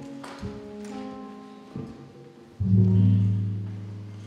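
Live jazz band playing a few sustained notes that step in pitch, then a loud, low held note starting about two and a half seconds in.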